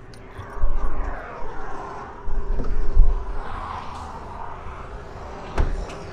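Low, uneven rumbling on the microphone as it is carried around the car, then a single sharp click near the end as the 2010 Kia Optima's rear door is opened.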